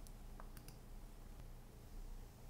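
Near-silent room tone with a low steady hum and a few faint, brief clicks.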